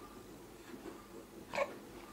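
A baby's single short coo, about one and a half seconds in, over faint room sound.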